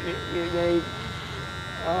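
Cordless electric hair clippers buzzing steadily, a high, even hum, as they are pressed against a grey beard and moustache, cutting it off.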